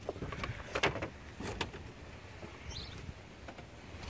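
An old Jeep Cherokee XJ fibreboard headliner board scraping and knocking against the roof and trim as it is slid out of the cabin by hand. There are several sharp knocks in the first two seconds, then quieter rubbing.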